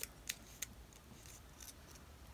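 Faint rustling and crisp little ticks of a thin paper quilling strip being rolled and handled between the fingers, with three sharp ticks in the first second.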